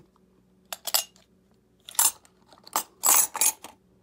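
A stack of 1 oz silver bars dropped into a square plastic bar tube, clinking and clattering in several short bursts, with the longest clatter about three seconds in.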